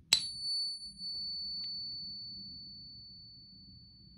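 Morgan silver dollar of 90% silver and 10% copper, held in a coin pinger and tapped once with a wooden dowel, ringing with one long, clear, high tone that fades slowly over several seconds; fainter higher overtones die away after about two seconds. The long ring is the sign of the copper alloy, as purer silver rings far shorter, and it marks an authentic Morgan dollar.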